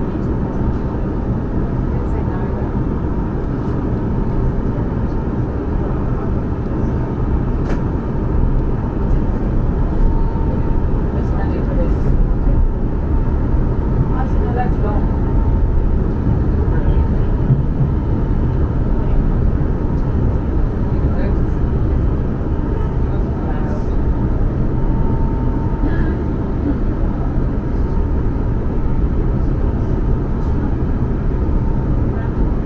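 Cabin sound inside a Class 450 Desiro electric multiple unit pulling away and picking up speed: a steady low rumble of wheels and running gear on the track, growing a little louder over the first several seconds. A faint steady whine and scattered light clicks run through it.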